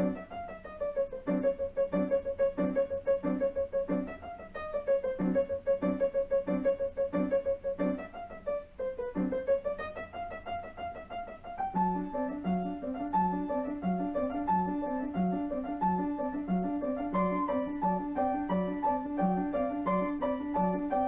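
Piano music accompanying a silent film: steady pulsing chords under a long-held melody note, turning about halfway through to a busier melody that steps higher over the same pulse.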